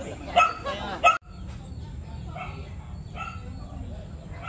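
A dog barking twice in quick succession over people talking; the sound then cuts off abruptly and gives way to quieter background voices.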